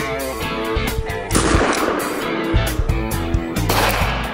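EKOL Viper 2.5-inch blank revolver firing 6mm long (.22 long) blank cartridges: two sharp bangs, about a second in and near the end, each trailing off briefly. Guitar music plays underneath.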